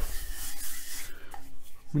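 Hands rubbing flour onto a wooden rolling pin, a dry rubbing noise that is loudest in the first second.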